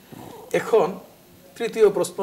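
A man's speech broken by short pauses, with one drawn-out word about half a second in that falls in pitch, and talk picking up again near the end.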